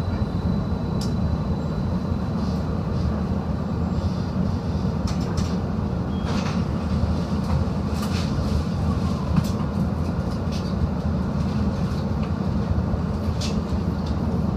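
Streetcar heard from inside its cabin: a steady low rumble with scattered sharp clicks and knocks.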